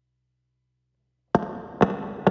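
Near silence, then a semi-hollow electric guitar comes in about a second and a half in with two sharp percussive strums, half a second apart, each ringing briefly.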